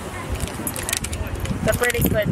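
A plastic snack wrapper crinkling in short, crackly bursts as it is handled.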